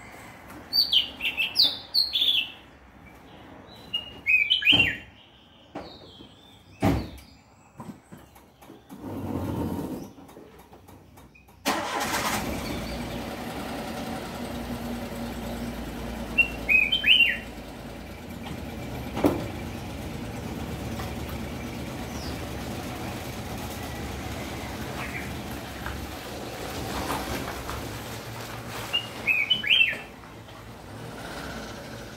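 A caged crested songbird, a Cang Jambul, gives short bright chirping phrases: a cluster about a second in, another around four seconds, one at about seventeen seconds and one near the end. A couple of sharp knocks sound in the first seven seconds, and about twelve seconds in a vehicle engine starts and keeps running steadily under the calls.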